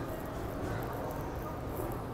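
Steady background hum of an airport terminal, low and even, with no distinct events.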